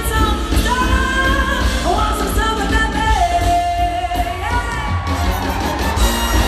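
A female pop singer's live lead vocal over a band: a run of sliding notes, then one long held note about halfway through, before the melody moves on.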